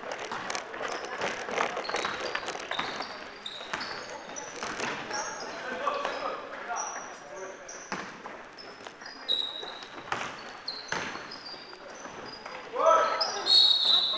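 Basketball game on an indoor hall court: sneakers squeaking in short high chirps on the floor, the ball bouncing and feet thudding, with players' voices calling out and a loud shout near the end.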